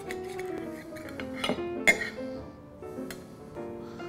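Soft background guitar music, with a few sharp clinks of a steel carving knife and fork against a ceramic plate as turkey thigh meat is sliced; the loudest clink comes near two seconds in.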